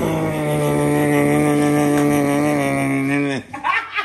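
A man's voice holding one long, steady vocal note for about three seconds, then sliding down in pitch as it cuts off.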